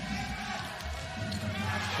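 Indoor volleyball rally: a few sharp hits of the ball against players' hands and forearms over steady arena crowd noise.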